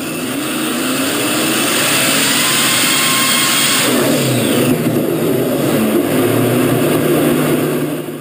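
Supercharged V8 engine on an engine dynamometer running flat out at high revs, the pitch rising over the first few seconds. About four seconds in the engine lets go and bursts into flame, and the sound turns rougher: an over-revved engine failing.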